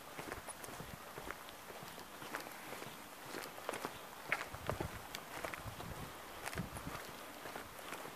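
Footsteps of a person walking on a paved street, quiet and uneven, with short clicks and soft thumps.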